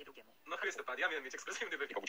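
Speech only: a man talking, playing from the screen's speakers and picked up by a phone in the room, with a short pause near the start.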